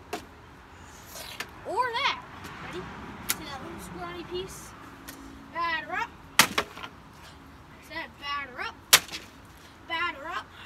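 Wooden boards of a frame being smashed apart: three sharp cracks, at the very start, about six and a half seconds in and about nine seconds in, with lighter knocks and splintering between them.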